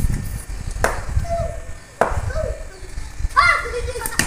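Children shouting and calling out while playing street cricket, with wind rumbling on the microphone and two sharp knocks, about one and two seconds in.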